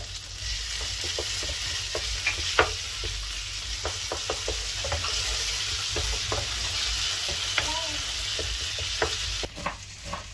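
Chopped tomatoes and garlic sizzling in hot oil in a nonstick frying pan, stirred with a wooden spatula that knocks now and then against the pan. The sizzle cuts off shortly before the end.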